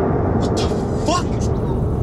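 A truck's engine runs with a steady low rumble. About a second in there is a brief vocal cry that rises and falls in pitch, along with a few short sharp sounds.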